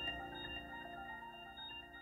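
Closing notes of a piano piece ringing on and fading out.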